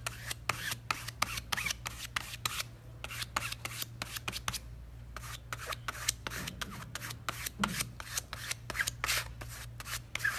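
Flat-edged spreader scraping and dragging Chalk Art paste across a mesh stencil in quick, irregular repeated strokes, with a short pause about four and a half seconds in.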